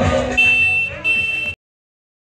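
Loud music from a parade float's speaker system, then two high-pitched blasts of about half a second each. The sound then cuts off abruptly.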